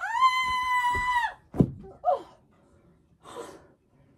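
A child's high-pitched squeal held steady for about a second, followed by a single thunk on the floor and a brief short vocal sound.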